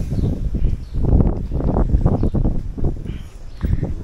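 Handling noise on a handheld camera's microphone: loud, irregular low rumbling and knocking as the camera is moved about.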